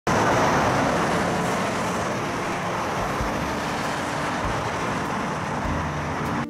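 Steady rushing rumble of a BART commuter train at an outdoor station platform, loudest at the start and easing slightly, with a faint steady hum joining about halfway.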